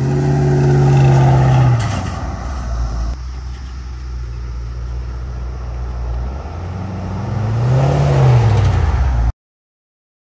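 1969 Chevrolet C10 pickup driving past. Its engine runs loud as it comes by, drops in pitch about two seconds in as it passes, and fades as it pulls away. Near the end the engine note rises and falls once more, then the sound cuts off suddenly.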